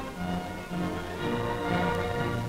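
Orchestral background music: several instruments holding sustained notes that change every half second or so.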